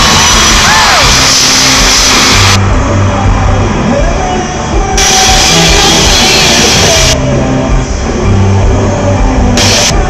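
Live pop-rock band with electric guitars and drums playing loud through an arena PA, heard from the audience, so the sound is close to clipping and echoes around the hall.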